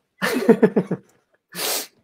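A woman laughing in quick pulses for under a second, then a short, sharp breath about a second and a half in.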